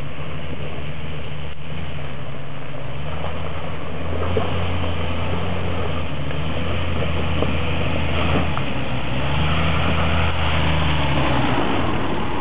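4WD engine running at low revs as the vehicle works slowly down a muddy, rocky track, its pitch rising and falling slightly a few times.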